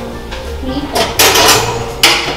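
Wall oven door being opened and a metal wire oven rack pulled out, a rattling clatter from about a second in.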